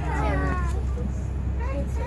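A person's high-pitched, drawn-out vocal sound falling in pitch in the first second, with a shorter call near the end, over the steady low rumble of the open safari truck.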